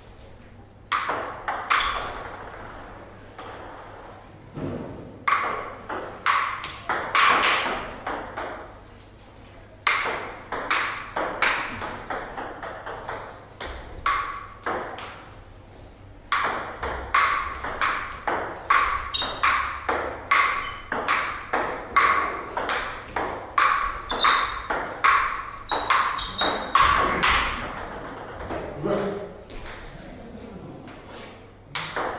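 Table tennis ball clicking back and forth between paddles and table in several rallies separated by short pauses, the longest rally running for about ten seconds in the second half.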